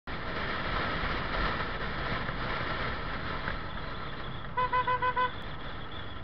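Steady riding noise of a motor scooter moving through traffic, engine and wind rumble on the microphone. A little after four and a half seconds in, a single-tone horn gives five short, quick toots.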